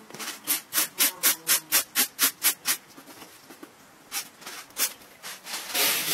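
Wheat grain rustling in a metal tray as it is shaken back and forth, about four strokes a second, then three more shakes. Near the end the grain pours from the tray into a metal basin in a steady rush.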